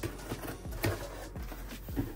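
A cardboard shipping box being opened by hand: its lid is lifted and pulled back, giving about five sharp cardboard knocks and scrapes. Background music plays underneath.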